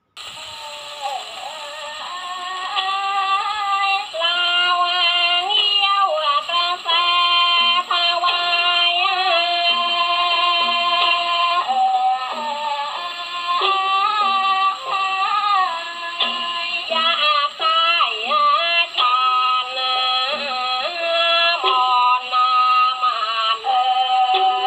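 A 78 rpm Parlophon shellac record of Thai piphat ensemble music playing on an acoustic gramophone, thin-sounding with little bass. The music starts right away and grows louder over the first few seconds, then carries on with several melodic lines at once.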